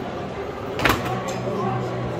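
One loud, sharp clack of foosball play about a second in, the ball or a rod's player figures striking against the table, over a steady murmur of hall ambience.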